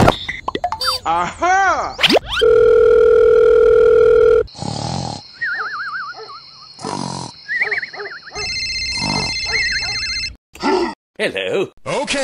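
A string of cartoon sound effects: bouncing, squeaky vocal glides, then a steady electronic tone held for about two seconds, then a snore with a wavering whistle on each breath. About eight seconds in comes an electronic telephone ringing for about two seconds, followed by short grunting voice sounds.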